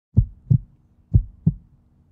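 Heartbeat sound effect: low double thumps, lub-dub, twice, about a second apart, over a faint steady hum.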